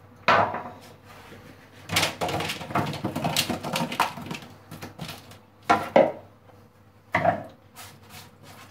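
Seasoned raw potato wedges tipped from a bowl onto a parchment-lined metal baking tray, tumbling and clattering for about two seconds. There is a sharp knock just before that, and a few more knocks near the end as the wedges are handled on the tray.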